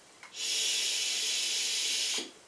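A strong, steady hiss of vapour being blown out in a jet. It starts just after a faint click and lasts nearly two seconds.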